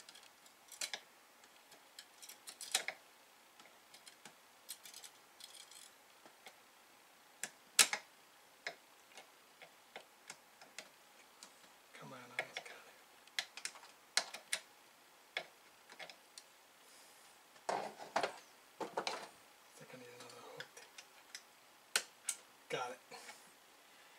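Faint, scattered small metallic clicks and taps as pliers work a spring-loaded part onto its hook inside a floppy disk drive's mechanism, the sharpest click about eight seconds in.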